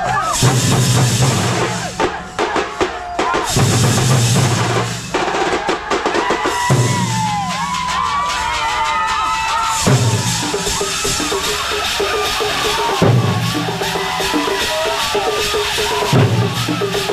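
Thambolam drum band playing: bass drums and snares beaten fast and loud, under a low held bass note that drops out and returns every few seconds and a wavering melody line over the top.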